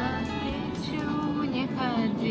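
A song playing on a car radio, heard inside the moving car with the car's engine and road noise underneath.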